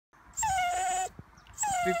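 A dachshund whining twice, two long high whines, each starting a little higher and sliding down, as it refuses to leave and go for a walk.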